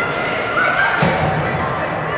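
Voices echoing through an ice arena, with a single sharp thud about halfway through.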